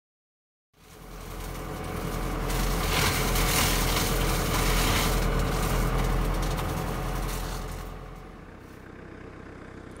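Tractor-mounted flail hedge cutter at work: the tractor engine and the spinning flail head cutting through hedge branches. It starts suddenly about a second in and fades down near the end.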